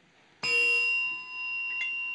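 A desk call bell struck once about half a second in, its clear tone ringing on and slowly fading. A faint click comes near the end.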